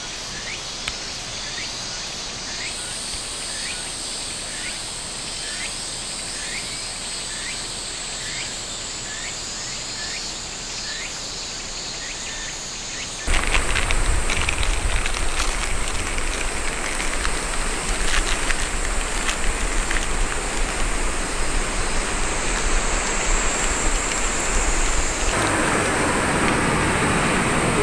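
Insects droning at a steady high pitch, with a short rising chirp repeated a little faster than once a second. About halfway through, the sound cuts abruptly to a louder, steady outdoor rushing noise with a low rumble and occasional clicks.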